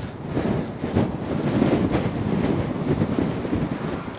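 Strong wind buffeting the microphone: a loud, low rumble that swells and eases.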